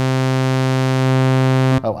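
Softube Model 82, a software emulation of the Roland SH-101 monosynth, holding one steady low note rich in harmonics, with its envelope sustain turned up. The note stops abruptly near the end.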